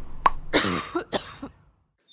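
A short pop, then a person coughing twice, about half a second apart: a cough sound effect for a sick cartoon character.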